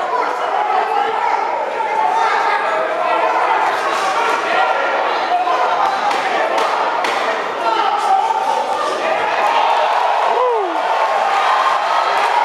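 Crowd of spectators talking and calling out in a large, echoing gym hall around an amateur boxing bout, with a few sharp thuds from the ring about halfway through.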